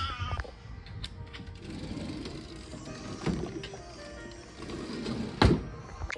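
Background music playing quietly, with two sharp knocks, a smaller one about three seconds in and a louder one near the end.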